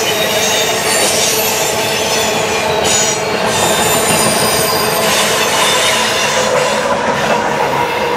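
Covered hopper cars of a freight train rolling past on curved track with a steady clatter and thin, sustained wheel squeal. The train's rear locomotive, CP 8755, an ES44AC, passes in the second half.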